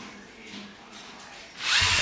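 The four motors of a LEGO SPIKE Prime robot whirring as it drives backwards across a wooden desk: a faint hum at first, then much louder and harsher from about one and a half seconds in.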